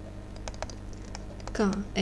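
A handful of light, irregular clicks and taps from writing by hand on a computer, then a woman's voice starts near the end.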